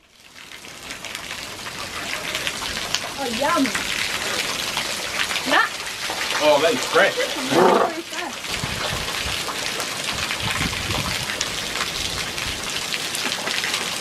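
Water dripping and showering from a rock overhang onto the stone below, a steady rain-like patter that fades in at the start. Brief voices break in a few seconds in.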